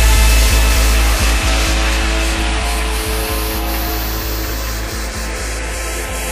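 Electronic dance music in a breakdown: the beat drops out, leaving a held deep bass note under a rising noise sweep, with faint regular ticks.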